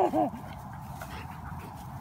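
Young black Labrador retriever making a few short whimpering sounds right at the start while chewing its toy.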